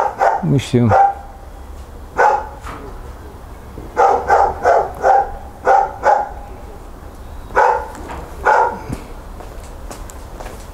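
Dogs barking in short single barks, with a quick run of about six barks in the middle and two more spaced out near the end.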